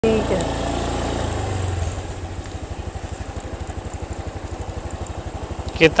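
Motorcycle engine easing off, its pitch falling over the first two seconds, then running at low revs with a steady rapid low pulsing.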